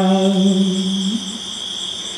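Khmer Buddhist smot chanting by a young novice monk: one long held note with a slight waver a little past one second, then fading away.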